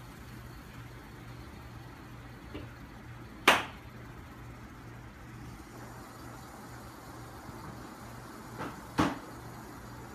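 Two sharp knocks about five and a half seconds apart, each with a fainter tap shortly before it, over a steady low hum.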